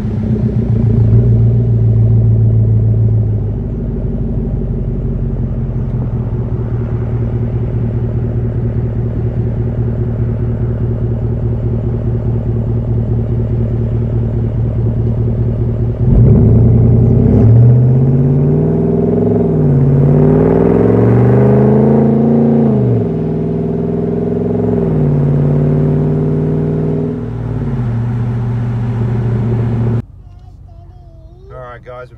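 Ram 1500's Hemi V8 exhaust through a KM high-flow sports muffler, with a deep rumble at steady low speed. About halfway through it gets louder and its pitch rises and falls several times as the truck accelerates through gear changes, then settles to a steadier note.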